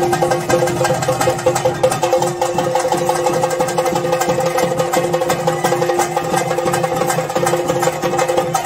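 Chenda drums played in a fast, dense, continuous beat, with sustained steady pitched tones held over the drumming.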